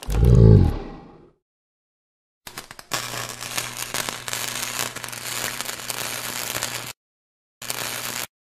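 A low boom that dies away over about a second, then, after a silent gap, a steady crackling of sparks over a low hum. The crackling cuts off abruptly and comes back briefly near the end.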